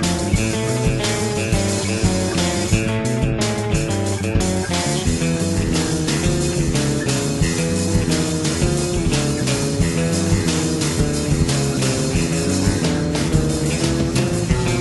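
Instrumental rock-in-opposition avant-rock: electric guitar and electric bass playing dense, shifting lines over acoustic drums.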